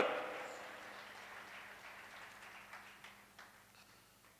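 The tail of a shouted "Out!" through a PA, echoing and dying away over about a second in a large hall. Faint room noise follows, with a few light clicks near the end and a steady low hum.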